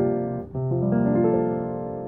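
Piano chord playing: a C9sus4 voicing rings with the sustain pedal, breaks off about half a second in, and is struck again. Upper notes are added one after another to build C13sus, a C7sus4 in the left hand under a D minor seven in the right.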